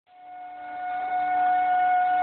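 Music: one long held note on a flute-like wind instrument, fading in from silence and then holding steady, with a lower steady drone beneath it.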